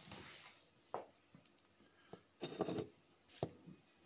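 Faint handling noise close to the microphone: a sharp click about a second in, a louder short rustle a little past halfway and another click near the end, with a brief breathy hiss at the start.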